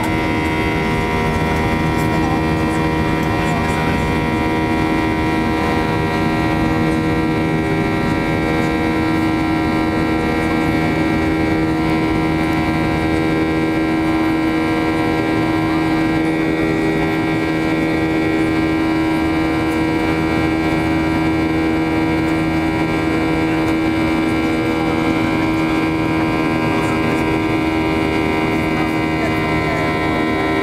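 Boeing 737-800's CFM56-7B turbofan engines running at climb power, heard from inside the cabin beside the wing: a loud, steady drone with several steady humming tones that do not change.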